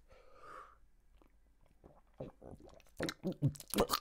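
A person drinking tea close to the microphone: a soft sip near the start, then after a pause a string of swallows and mouth clicks over the last second or so.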